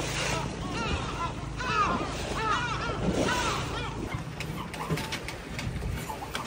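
A bird calling repeatedly from a sea cliff: a run of short calls, each rising and falling in pitch, over the steady low rumble of the boat and wind. A few sharp clicks near the end.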